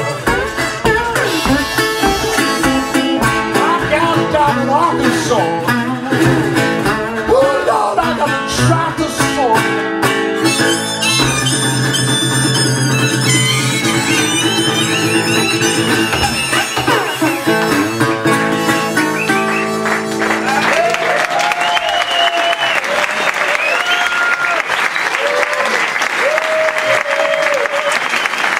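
Resonator guitar playing a fast picked blues passage with sliding notes, then hammering repeated chords to close the song. It stops about 21 seconds in, and the audience breaks into applause with cheers and whistles.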